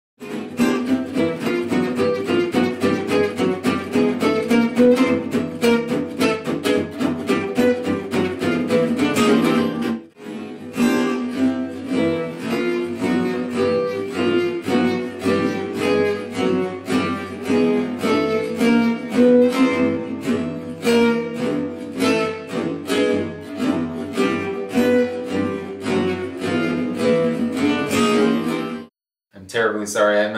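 Acoustic Selmer-style gypsy jazz guitars playing: a fast lead solo line over a steady strummed rhythm guitar. The lead plays upward-moving octaves to build tension. The music breaks off briefly about ten seconds in and starts again.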